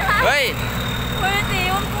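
An engine running with a steady low drone beneath excited voices.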